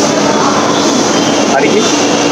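Steady railway-station din at a loud, even level: train noise with a constant low hum, and faint voices of people around.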